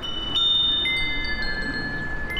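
Metal tube wind chimes ringing: several tubes sound one after another, each clear tone ringing on and overlapping the next, over a low background rumble.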